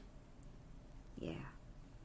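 A woman's brief, soft murmur with a falling pitch about a second in, over quiet room tone.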